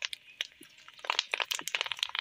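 Coloured dried papad (fryums) crackling and popping as they fry in shallow oil in a wok. The crackles are sparse at first and come thick and fast about a second in.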